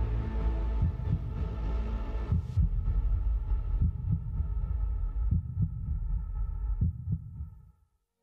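Cinematic trailer soundtrack: deep, heartbeat-like low thumps under a held drone, fading out to silence just before the end.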